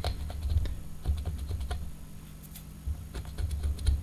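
Fingernail scratching dried Posca paint-marker lines off a glass jar, a run of small quick clicks and scrapes with low bumps from the jar being handled; the paint is coming off easily.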